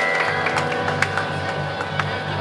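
Live amplified rock band beginning a song: a held electric-guitar note rings out, and about a quarter second in low bass notes enter in a steady repeating pattern.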